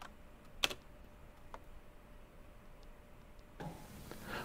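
Quiet room with one sharp click about half a second in, then a weaker click and a few faint ticks, from someone working a computer. A low hiss comes in near the end.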